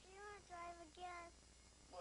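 A faint high voice singing three short notes in quick succession, the first arching and the next two a little lower.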